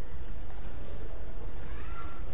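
Steady hiss and low hum of the lecture recording, with one faint rising-then-falling cry in the background near the end.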